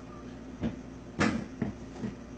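Three short knocks of household objects being handled, the loudest about a second in.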